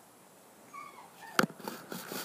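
A dog gives a short, high whine, followed by a single sharp click, the loudest sound, and some scattered rustling.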